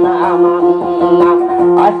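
Music: plucked string instruments play a repeated figure over a steady held drone note, in a short gap between sung lines.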